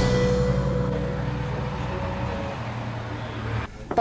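Acoustic guitar background music ending on a last strummed chord that rings out and slowly fades, then cuts off abruptly near the end.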